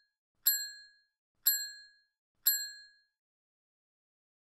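A bell-like ding sound effect, heard three times about a second apart. Each is a sharp, high, clear ring that dies away quickly.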